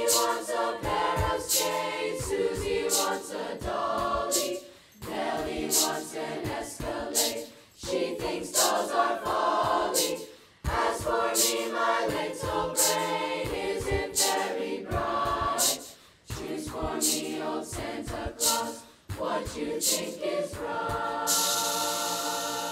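Children's choir singing a cappella, in phrases broken by short pauses.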